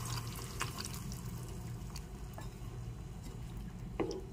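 Yogurt gravy with capsicum and tomato simmering in a pan and stirred with a wooden spatula: a low steady bubbling with a few soft ticks.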